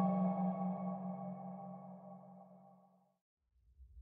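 A sustained ringing tone, a low hum with several higher overtones, fading away over about three seconds to silence. A faint low rumble comes in near the end.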